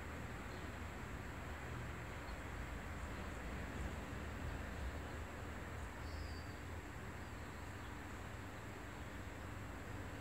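Faint, steady outdoor background noise with a low rumble and a thin steady high tone. A brief high chirp comes about six seconds in.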